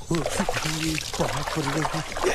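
Water splashing and pouring as clothes are washed by hand in a tub, with a man's voice over it.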